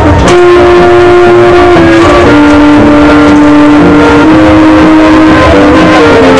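Bavarian brass band with tuba and trumpets playing a slow tune in long held notes. The music starts sharply about a quarter second in.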